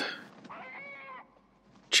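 A single faint animal cry lasting under a second, its pitch rising slightly and then falling.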